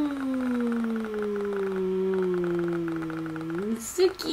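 A woman's long, drawn-out vocal coo of delight: one held note that slides slowly down in pitch for about three and a half seconds, with a short upward lift just before it stops.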